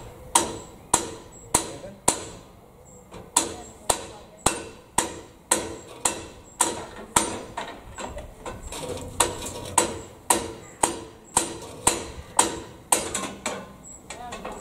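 Hammer striking metal: a steady run of sharp, ringing blows, about two a second, broken by a couple of short pauses.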